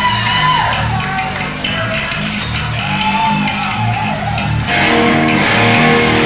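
Electric bass guitar noodling loose low notes through an amp, with higher electric guitar notes bending above it. About five seconds in, a distorted electric guitar chord comes in and rings on.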